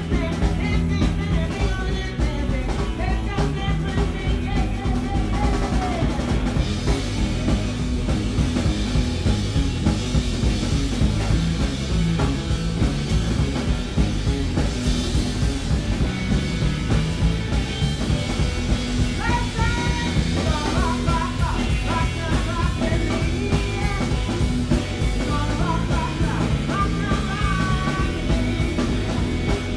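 Live band playing a loud, driving rock and roll number: drum kit keeping a steady beat under electric guitar, with a woman singing for the first few seconds and again through the last third.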